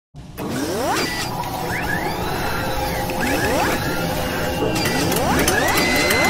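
Sound effects of an animated logo intro: mechanical whirs that rise in pitch three times, about two seconds apart, over a steady hum. A run of clicks and a held high tone come near the end.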